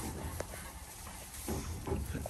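Goats moving about in straw bedding: faint rustling, with a sharp tick about half a second in and a couple of light knocks near the end.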